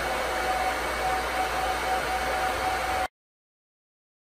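Cooling fans of a Supermicro SYS-2029BT-HNR four-node 2U server running steadily, a smooth rushing noise with a faint steady whine. The sound cuts out completely about three seconds in.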